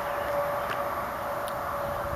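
Steady outdoor background noise: an even rushing hiss with a faint steady hum running through it, and a few light clicks.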